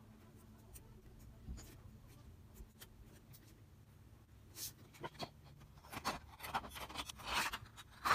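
Felt-tip Sharpie marker drawing on a clear plastic sheet: short scratching strokes, faint at first, then a denser, louder run of strokes in the last few seconds.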